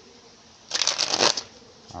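A deck of tarot cards being riffle-shuffled: a quick run of flicking card clicks a little under a second in, lasting about half a second.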